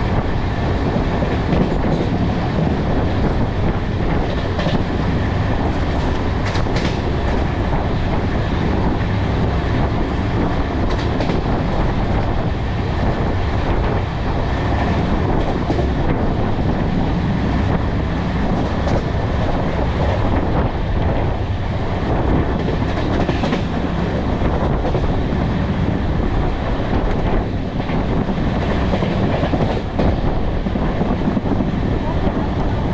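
Passenger coach of the Aravali Express running at speed on the track: a steady low rumble of wheels on rails, with occasional clicks over the rail joints.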